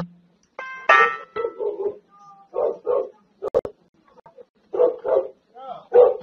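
A dog barking at the front door in a series of short, separate barks, picked up by a doorbell camera's microphone, with a man's brief exclamation near the end.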